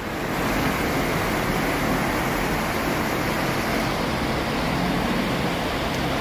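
Steady rushing air noise with a faint low hum, as from the large ventilation fans of a dairy cow shed, getting a little louder just after the start.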